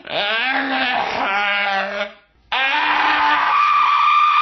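A boy's voice screaming loudly without words: a wavering yell for about two seconds, a brief break, then a long high-pitched scream held on one note.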